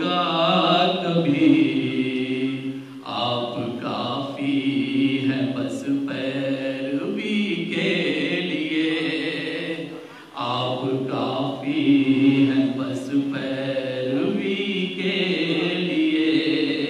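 A man reciting Urdu poetry in a melodic, chanted style (tarannum) through a microphone and PA, singing in long phrases with held notes that pause briefly about three seconds in and again about ten seconds in.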